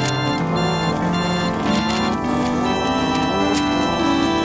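Organ-like synthesizer music: held chords with a melody stepping through short notes.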